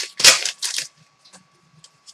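Trading cards and a clear plastic card sleeve being handled. Several short crisp rustles come in the first second, then only faint light ticks as cards are moved.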